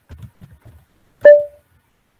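Soft, muffled keyboard taps come over a video call. A little over a second in, a single sharp clink with a brief ringing tone is the loudest sound, fading within about half a second.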